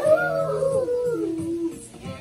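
A long dog-like howl that slides down in pitch over about a second and a half, then stops.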